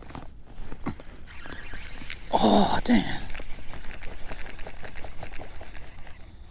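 Baitcasting rod and reel in use: a whir of line and spool in the middle, then rapid, evenly spaced ticking as the reel is cranked on the retrieve.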